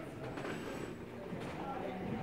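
Indistinct background voices and room noise; the brushwork itself makes no sound that stands out.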